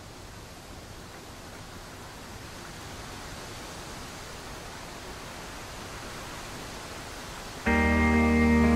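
A steady rushing noise, even and without tones, slowly growing louder; near the end, guitar music cuts in suddenly and much louder.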